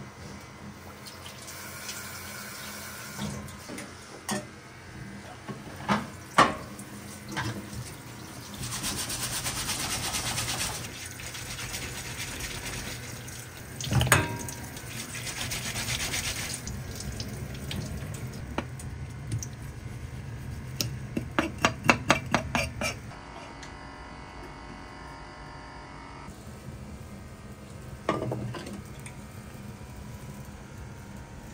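Tap water running into a stainless-steel sink while a fresh abalone is scrubbed with a brush under the stream, with a few sharp knocks and a quick run of clicks along the way.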